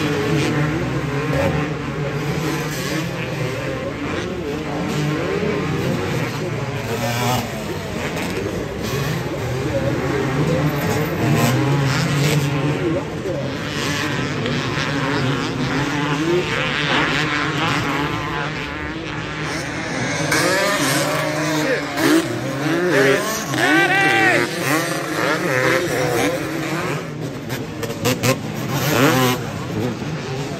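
Motocross dirt bikes racing on a track, several engines revving up and falling off repeatedly through jumps and corners, with sharper, louder rev sweeps in the second half.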